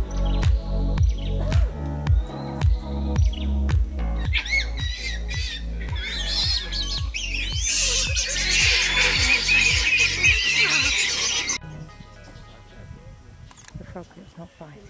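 Background music with a steady beat, over which a young proboscis monkey gives high, wavering calls from about four seconds in. Music and calls cut off together about two seconds before the end, leaving a quieter outdoor background.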